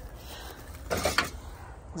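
Empty aluminium drink cans rattling and clinking in a plastic bin as one is picked out, a short burst about a second in, over a low steady rumble.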